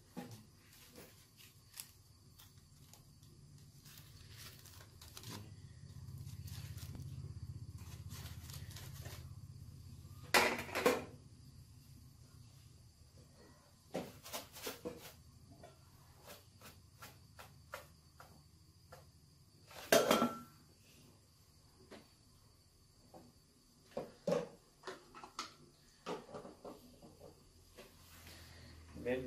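Metal tongs clinking against a wire grill rack and rustling foil-wrapped food as the packets are turned over a gas burner: scattered small clicks and two loud knocks, about ten and twenty seconds in. A low steady burner hum sits underneath.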